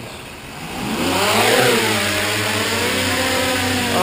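Quadcopter's motors and propellers inside a foam ducted shroud spooling up to lift off: a whine that rises for about a second, then holds steady at a loud, even pitch.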